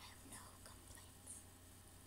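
Near silence: a person's faint whispering breaths, a few short hisses in the first half second and once more midway, over a low steady hum.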